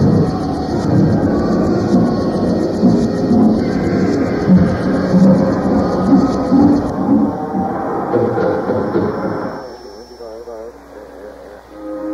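Electronic EBM/experimental music from a 1990 cassette recording: a dense, layered passage that drops away about ten seconds in to a thinner section with a warbling synth tone.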